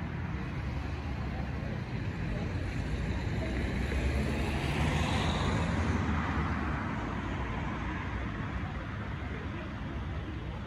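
Road traffic over a steady low rumble, with a car passing that swells to its loudest about five seconds in and then fades.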